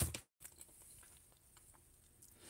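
A fork knocks once against a ceramic plate, then near silence with a few faint ticks.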